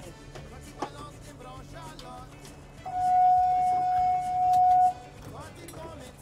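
Background music, with a single steady high note held for about two seconds near the middle, the loudest sound here.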